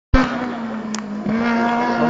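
A race car's engine running at steady high revs, with a single sharp click about a second in.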